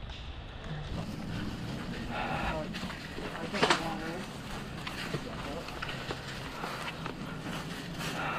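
Faint, distant voices calling out over a steady low background rumble, with a few faint sharp clicks scattered through it.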